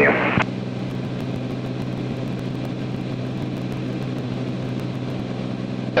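Cirrus SR22T's six-cylinder piston engine and propeller droning steadily in the cockpit at cruise, about 75% power.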